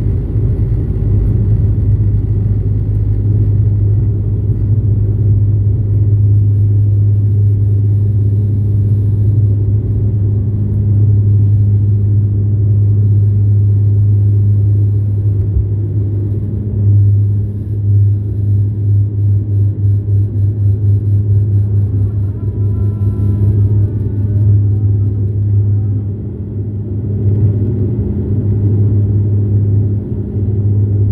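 Inside the cabin of a Dash 8-400 during takeoff, its two Pratt & Whitney Canada PW150A turboprops at takeoff power make a steady, loud low propeller drone. Runway rumble from the rolling wheels lies underneath at first and thins out about halfway through as the aircraft lifts off. After that the drone throbs in a rapid beat for several seconds, and a faint wavering whine comes in near the three-quarter mark.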